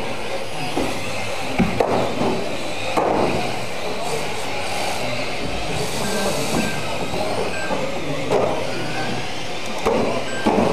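Several 1/10-scale RC mini racing cars running laps on a carpet track: a busy, continuous mix of small-motor whine and tyre noise, with a couple of sharp knocks about two seconds in.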